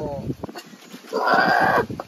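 A goat bleating once, a single quavering call of just under a second, a little past the middle.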